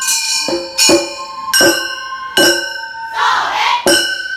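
Gion-bayashi festival music: small brass kane gongs struck in the 'konchikichin' pattern along with drum beats, about seven strikes in an uneven rhythm, each one ringing on. A short noisy rush comes a little after three seconds.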